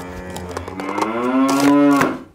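A long, low moo-like call, one unbroken tone that rises slightly in pitch and grows louder, then cuts off suddenly.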